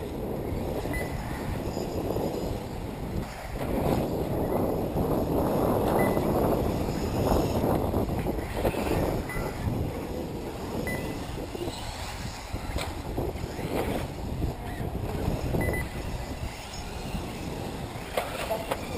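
Wind buffeting the microphone over the outdoor sound of 1/8-scale electric RC buggies racing on a dirt track. Short high beeps recur every second or two, with a few sharp clicks.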